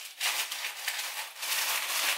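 Plastic shopping bags rustling and crinkling as they are handled and rummaged through, an uneven crackly sound that swells and dips.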